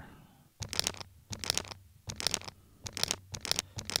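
Percussive sample loop playing from a Roland SP-404MKII sampler: a string of short, hissy percussion hits in an uneven, clustered rhythm over a faint low hum.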